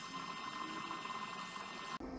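Faint steady hiss with a few thin, steady high-pitched tones, no knocks or clicks.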